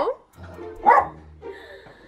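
A Jack Russell terrier barks once, sharply, about a second in.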